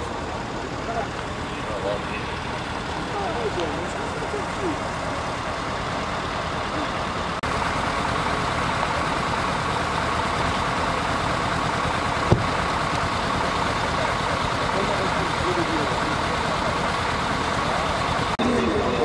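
Vehicle engines idling steadily under faint background voices, the sound stepping up a little about seven seconds in. There is one sharp click about twelve seconds in.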